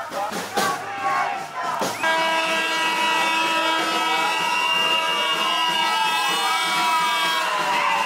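A siren wailing slowly up and down over a loud, steady, held horn tone, starting suddenly about two seconds in. Before that, a crowd shouts, with a few sharp knocks.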